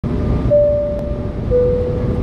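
Jet airliner cabin noise in flight: a loud, steady rumble of engines and airflow. About half a second in a clear held tone sounds, followed a second later by a lower one.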